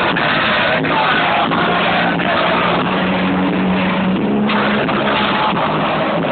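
Live punk/Oi! rock band playing loud through a PA, with distorted electric guitar, heard from within the audience and recorded muffled and distorted.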